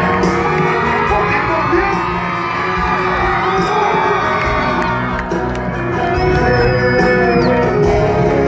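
Live band music from a concert stage, heard from within the audience, with crowd members shouting and whooping over it. Two high sliding tones rise above the music, about three seconds in and again about six seconds in.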